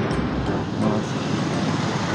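Steady street traffic noise: the even hum of road vehicles on a city street.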